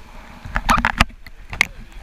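Whitewater from breaking surf washing over and splashing against a waterproof action camera at water level. A quick run of sharp splashes and crackles comes about half a second in, and another splash near the end.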